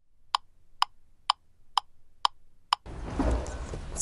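Clock-like ticking: six sharp, evenly spaced ticks, about two a second, then faint room noise near the end.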